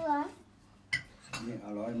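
Cutlery clinking against china plates at a table, with a sharp clink about a second in. Short vocal sounds, transcribed as "binh", come at the start and near the end.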